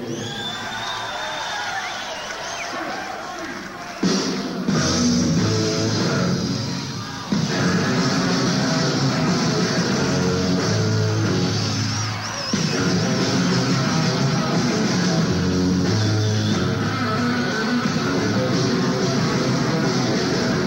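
Live rock band with electric guitars, heard from an audience recording: sparser guitar with a gliding tone at first, then the full band crashing in loudly about four seconds in and building again about three seconds later.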